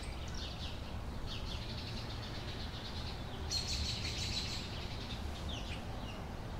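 Sparrows chirping: a steady run of short, down-slurred chirps, thickening into a denser burst of chattering about halfway through. A low background rumble runs underneath.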